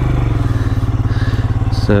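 Motorcycle engine running steadily while riding, its firing pulses close-spaced and even at a low pitch.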